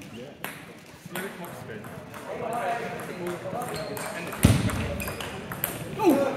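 Table tennis ball clicking off bats and table: a couple of sharp clicks early, a loud thud about four and a half seconds in, then quicker rally hits near the end. Murmured voices in the hall behind.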